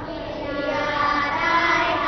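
A class of young children reading aloud together in unison, their voices drawn out into a sing-song chant.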